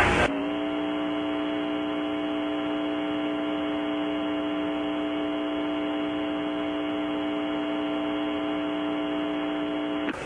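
Steady electrical hum with a buzzy stack of overtones. It cuts in abruptly a moment in, replacing the noisier commentary audio, then holds at one even pitch and level.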